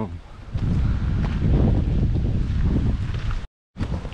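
Wind buffeting a small action-camera microphone: a steady low rumble. It breaks off in a brief dead silence near the end, where the recording cuts.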